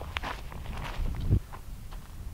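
Footsteps on dry desert dirt: a few steps, with a low rumble underneath.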